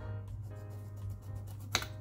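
Kitchen knife slicing the stringy tip off a Japanese sweet potato on a wooden cutting board, with small cutting clicks and one sharp knock near the end as the blade meets the board, over background music.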